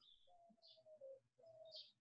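Near silence: room tone, with a few faint, short bird calls in the background.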